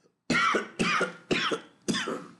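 A man coughing four times in quick succession, about half a second apart.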